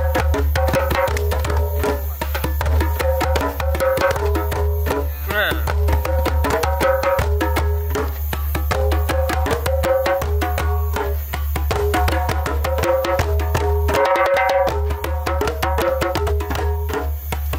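Several djembes played together by hand in a steady, dense group rhythm, with many overlapping strokes.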